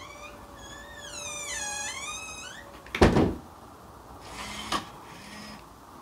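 Automatic door closer swinging a door shut on a voice command: a steady motor hum under a long high squeal that dips and rises again, then a loud knock about three seconds in as the door shuts. Two short whirs follow near the end.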